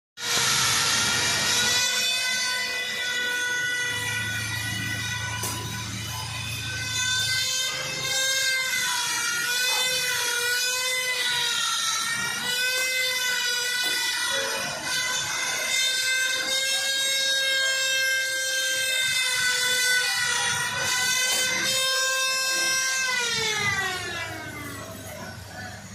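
Mobile crane's hydraulic system whining steadily while it holds and lifts a heavy marble statue. The whine wavers a little in pitch and falls away about a second before the end. A lower engine drone joins it for a few seconds early on.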